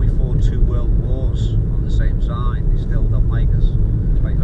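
Steady low rumble of a car's engine and road noise inside a taxi's cabin while it is driven, with snatches of low talk over it.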